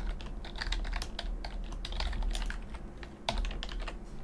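Typing on a computer keyboard: a quick, uneven run of keystrokes, several a second, with a brief lull shortly before the end.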